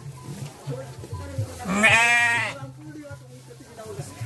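A Garut sheep bleats once, loudly, for just under a second about halfway through.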